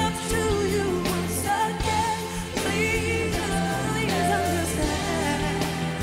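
Live R&B ballad played by a band and orchestra, with wordless singing gliding over the sustained accompaniment.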